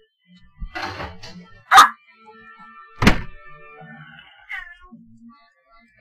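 A short loud sound a little under two seconds in, then a heavy thunk about a second later, with a television show playing faintly in the background.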